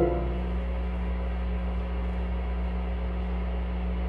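Loud electronic music cuts off just after the start, leaving a steady low electronic hum with a few faint held tones from the synthesizer rig.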